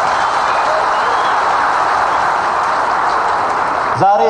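Audience applause in a hall: many people clapping together in a steady, dense patter.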